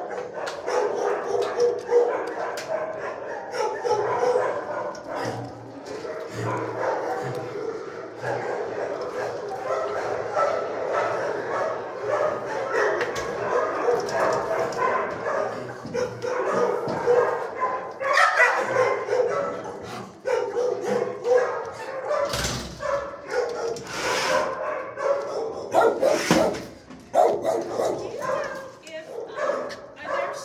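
Many shelter dogs barking, yipping and whining over one another in a continuous, echoing din. A few louder knocks come in the last third.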